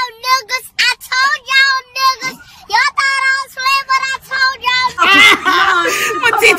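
A young girl singing in a high voice, a string of short, clipped notes on nearly the same pitch. About a second before the end, women laughing and talking loudly take over.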